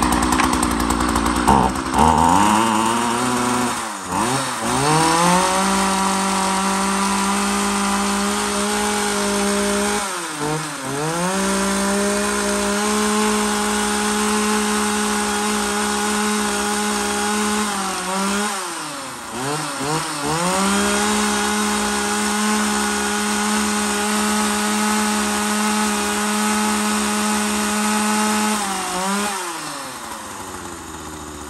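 Makita 335 36 cc two-stroke chainsaw running after a pull-start. It gives a short blip of throttle, then is revved three times to a high, steady scream of several seconds each, falling back to idle between runs and near the end. The engine runs crisp and strong.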